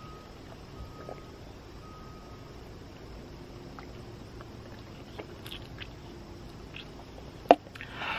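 Faint steady background hiss while a man drinks from a cup, with a few soft small sounds and one sharp knock about seven and a half seconds in, the loudest sound.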